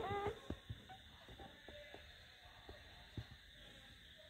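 A brief pitched voice-like sound at the very start, then a quiet room with a few faint, scattered taps and knocks.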